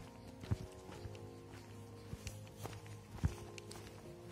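Footsteps of someone walking on a dirt trail strewn with dry twigs, a few steps sharper than the rest, over soft background music with long held notes.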